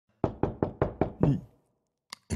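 Rapid knocking: six quick knocks at about five a second, the last one ringing slightly longer.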